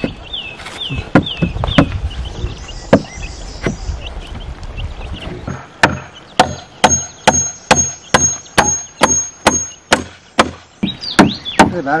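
Claw hammer driving a nail into the wooden planks of a crate: a few scattered knocks, then a steady run of hammer blows, about two to three a second, in the second half, with a thin high ring over the blows.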